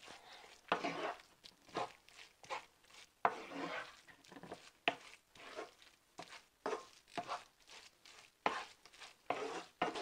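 Wooden spatula stirring and scraping a crumbled lentil-vada mixture around a nonstick frying pan, in irregular strokes about two a second.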